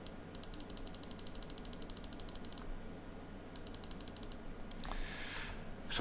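Computer mouse scroll wheel ticking through its notches: a fast, even run of small clicks lasting about two seconds, then a shorter run about a second later, as the padding values are stepped up. A short hiss near the end.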